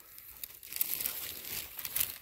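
Dry leaf litter and undergrowth rustling and crackling as a person moves through it on the forest floor, louder after about half a second, with a few sharp crackles.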